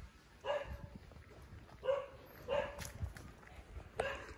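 A dog barking faintly, three short barks spread over a few seconds.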